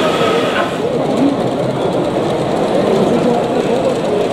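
A steady babble of many people talking in a crowded exhibition hall, with an H0 model train of hopper wagons running along the track underneath it.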